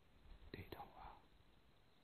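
Near silence, broken about half a second in by a brief faint whisper, led by two small sharp clicks.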